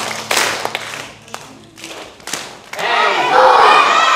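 Several sharp hand claps, spaced unevenly over the first three seconds. Then a group of voices starts singing about three seconds in, louder than the claps.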